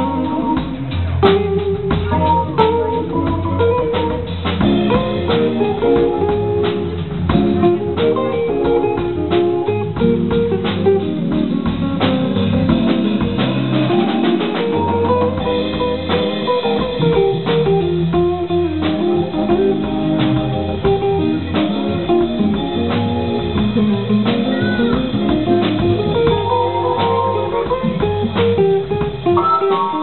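A live instrumental trio plays: electric guitar, keyboard and drum kit together at a steady level, with drum strokes running through.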